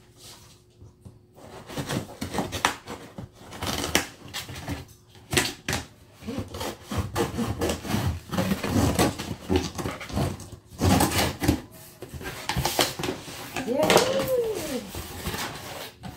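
Scissors cutting and scraping along the packing tape on a cardboard shipping box, a long run of irregular scratchy clicks and scrapes. This is followed by the cardboard flaps being pulled open.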